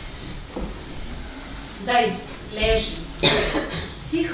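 A voice in a few short, soft phrases, with a brief sharp noise about three seconds in, the loudest moment.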